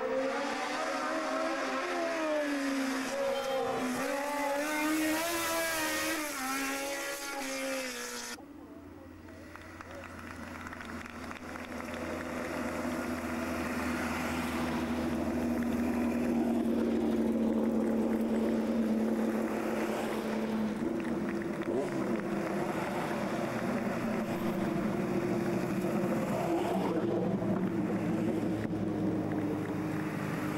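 Racing car engine revving hard, its pitch climbing and dropping again and again as it goes through the gears, cut off abruptly about eight seconds in. Then the engine of an open-cockpit sports prototype race car builds up as it climbs toward the listener and is loudest just past the middle, with a steady engine drone continuing after it.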